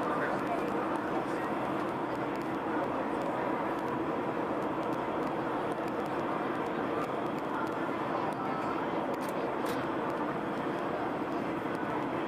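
Metro train running at speed through a tunnel, heard from inside the car: a steady rumble of wheels on rail and running gear, with a few faint clicks.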